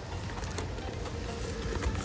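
Steady low rumble of a car interior with the engine running.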